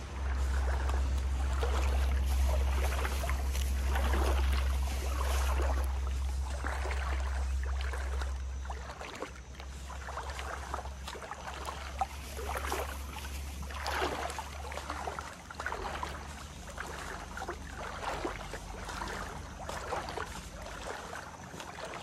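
A person wading through shallow river water, each stride a swishing splash as the legs push through, in an uneven rhythm. A steady low rumble on the microphone, heavier in the first half, lies under it.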